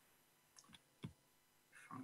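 Near silence with a few faint, short clicks in the middle of the stretch.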